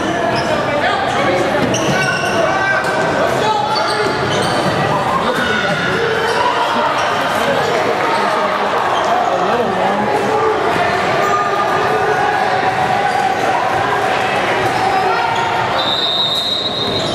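A basketball dribbled and bouncing on a hardwood gym floor during play, over steady, indistinct crowd chatter that echoes around a large gym.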